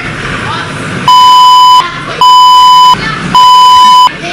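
Three loud censor bleeps, each a steady high tone lasting under a second, about a second in, in the middle and near the end, blanking out shouted abuse. Crowd voices are heard between them.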